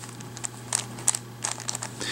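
Plastic twisty puzzle, a WitEden 3x3 Mixup Plus cube, being turned by hand: a scatter of light clicks and clacks as its middle slice is moved.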